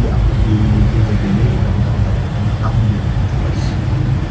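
Steady low rumble of room background noise, with faint voices murmuring over it.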